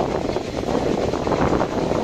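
Wind buffeting the microphone: a loud, uneven rushing rumble.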